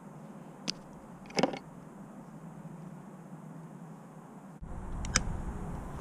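Hand wire strippers snipping and stripping insulation off small-gauge wires: a few short sharp clicks, one about a second in, a quick double shortly after, and another near the end, over a steady low hum. A lower rumbling background comes in near the end.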